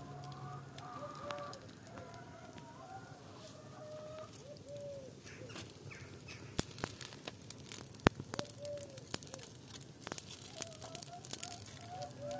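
Chickens clucking, with a wood fire crackling and popping. The crackles grow thicker about halfway through, with two sharp pops.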